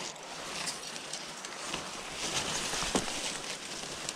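Footsteps and the rustle of leafy weeds brushing past a person and a fishing rod, with scattered light crackles of stems.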